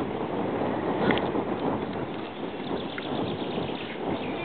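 Wind buffeting the camera microphone: an even rushing hiss, with a few faint high ticks near the end.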